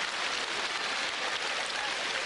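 Audience applauding steadily after a comedian's punchline.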